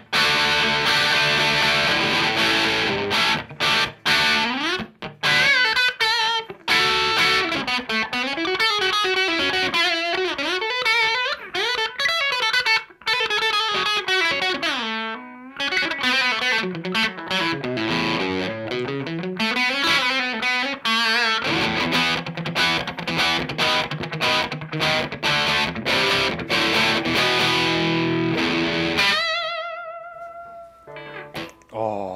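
Les Paul-style electric guitar played through a Bondi Effects Sick As (High Shredroom Edition) overdrive pedal, a high-gain distorted tone with crisp, jangly highs. Chords open, then lead lines with vibrato and a fast descending run in the middle, chords again, and a held note with vibrato ringing out at the end.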